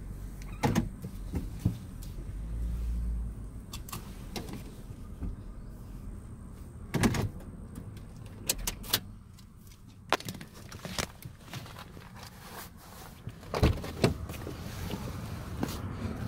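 Car rolling slowly while parking, its engine a low steady hum that drops away about ten seconds in, with scattered knocks and clicks inside the car and a couple of door-like thumps near the end.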